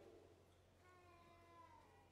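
Near silence in a pause, with a faint high-pitched call sliding slightly down in pitch about a second in.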